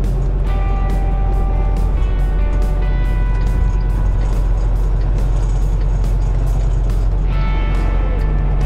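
Steady low engine and road rumble inside a moving semi-truck cab, with background music playing over it: a steady beat, and held notes for the first few seconds and again near the end.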